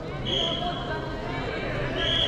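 A high, steady signal tone sounds twice, each lasting well under a second, about two seconds apart, over voices and shouting in a sports hall.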